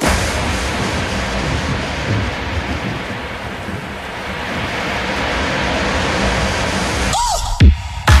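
Breakdown in a techno DJ mix: the beat drops out and a dense noise wash with low rumble fills the gap, dipping in the middle and swelling again. Near the end a short tone falls steeply in pitch, as a lead-in to the drop.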